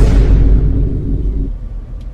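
A sudden loud boom with a low ringing tail that cuts off about a second and a half in: a dramatic impact sound effect. Under it runs a steady low rumble.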